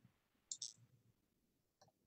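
Near silence broken by two faint, short clicks about half a second in, a computer mouse clicking.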